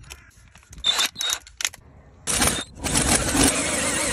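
18V GMC cordless drill driving a scissor jack's screw through a hex-key extension bar. It gives a few short bursts about a second in, then from about halfway runs steadily as it winds the jack up under load.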